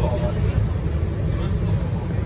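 Low, steady drone of a MAN NL323F A22 single-decker bus's diesel engine and running gear, heard from inside the cabin while the bus drives along.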